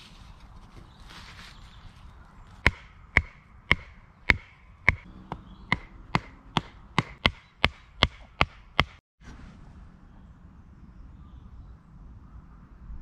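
A wooden tent peg being hammered into soft ground: about fourteen sharp knocks, starting a few seconds in and coming faster toward the end.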